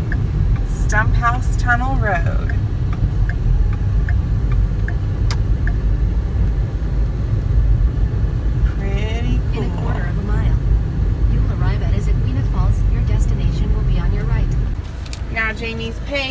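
Car driving, heard from inside the cabin: a steady low rumble of engine and tyres on wet pavement that drops away about fifteen seconds in as the car slows to a stop.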